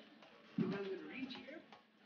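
A person's voice: a short wordless vocal sound starts abruptly about half a second in, followed by quieter voice sounds.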